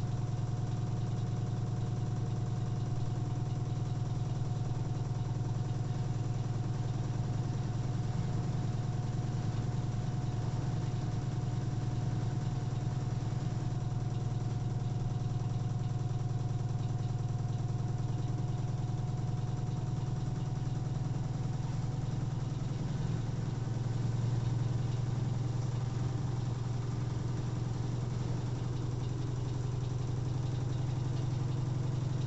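LG AiDD DirectDrive 9 kg front-loading washing machine running steadily with a low hum and a faint steady whine, the drum turning slowly with water in it. This is during the 1100 rpm intermediate spin phase, which the load's imbalance holds back. The hum swells slightly near the end.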